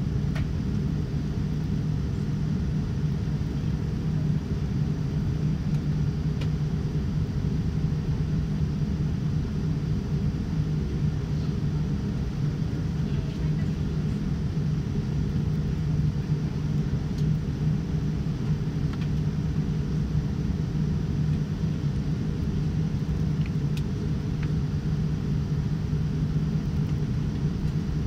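Steady low cabin rumble of a Boeing 787-9 airliner taxiing, with a constant hum underneath.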